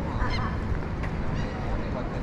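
A bird giving short calls, once just after the start and again about a second and a half in, over steady low street rumble.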